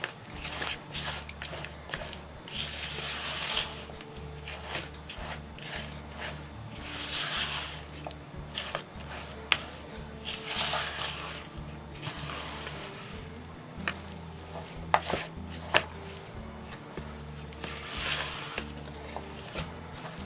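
A spatula stirring and scraping thick cookie dough in a plastic mixing jug, in repeated scratchy strokes with a few sharp clicks against the jug. Quiet background music with a low bass runs underneath.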